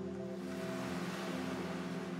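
Quiet background music: a low chord held steady, over a soft, even wash of ocean-surf sound.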